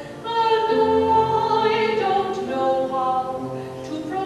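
Choir singing in parts, holding chords that change every second or so, after a brief dip at the start as a new phrase begins.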